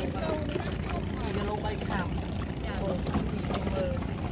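Small petrol longtail boat engine running steadily with an even hum, with faint voices over it.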